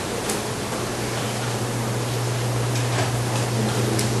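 Steady hiss with a low, even hum: classroom room noise and recording hiss, with a few faint brief scratches.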